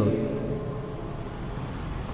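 Marker pen writing on a whiteboard, the tip rubbing across the board in short strokes over steady room noise.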